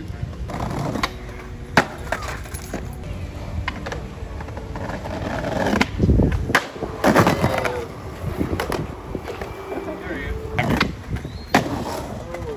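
Skateboard on concrete: sharp clacks of the board popping and hitting the ground, with a louder landing and wheel roll about six to seven seconds in. Voices chatter in the background.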